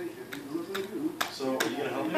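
A young child vocalizing softly without words, with a few light clicks in between.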